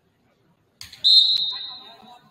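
Referee's whistle blown once, a single high-pitched blast about a second in that fades away over most of a second, signalling the serve.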